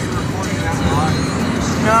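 Car cabin noise from a moving car, a steady low rumble of road and engine, with a voice heard briefly about a second in.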